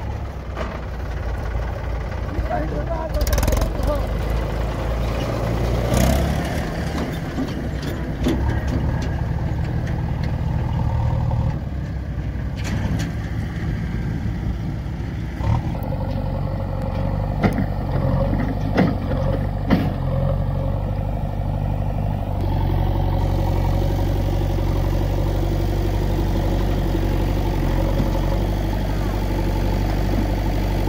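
Diesel engines of a JCB 3DX backhoe loader and a Mahindra tractor running steadily as the backhoe digs soil. There are several sharp knocks around the middle, and the engine note steadies a little louder about two-thirds of the way through.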